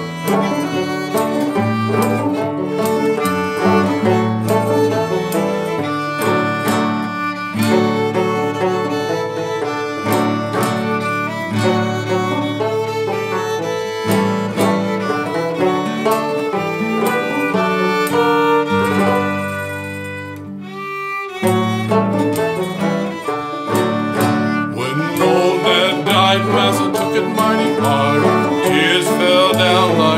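Old-time string band playing an instrumental break between sung verses: fiddle leading over banjo and guitar. The music thins out and dips briefly about twenty seconds in.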